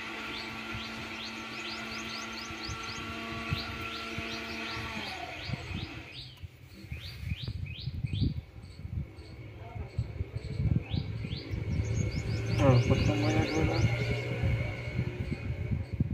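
Birds chirping: rapid runs of short, high, downward-sweeping notes, several a second, over a steady hum that stops about five seconds in. Low thumps and rumbles join in the second half.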